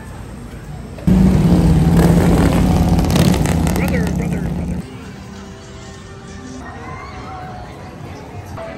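Cruiser motorcycle engine running loud as it rolls past: a steady low drone that starts suddenly about a second in, steps up slightly in pitch, and cuts off abruptly near five seconds.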